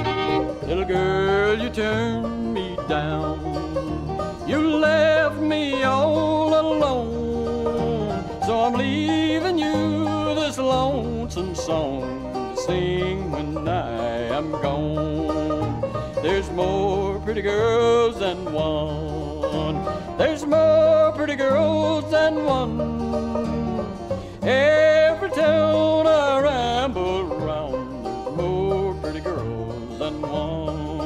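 Instrumental break of an old-time string band: fiddle, five-string banjo, guitar and bass playing together, the melody sliding between notes over a steady bass line.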